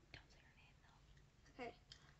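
Faint whispering, then a spoken word near the end, against near silence.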